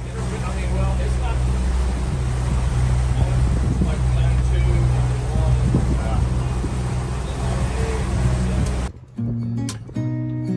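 Steady low drone of the catamaran's diesel engine under way, with wind and sea noise over it and faint voices. About nine seconds in it cuts sharply to acoustic guitar music.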